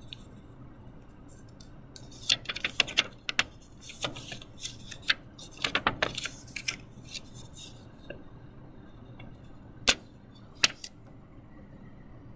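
Thin clear plastic transparency sheet crinkling and crackling as it is flexed and peeled off a soft oval of polymer clay: a run of irregular crackles over several seconds, then two lone clicks near the end.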